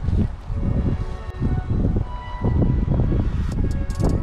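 Wind buffeting the microphone in uneven low gusts, over soft background music, with a few light clicks near the end.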